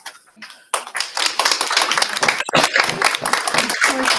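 Audience applauding: a brief pause, then dense clapping from many hands that starts abruptly under a second in and keeps going.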